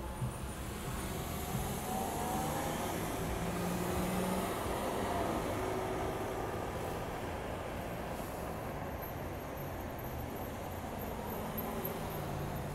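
City street traffic: cars driving past through an intersection, engine and tyre noise swelling to a peak mid-way and then easing.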